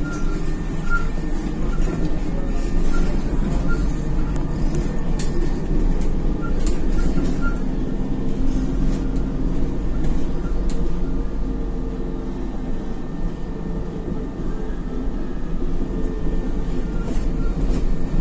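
Isuzu Novociti Life city bus heard from inside the cabin while driving: a steady engine and road rumble, with a faint quick ticking now and then.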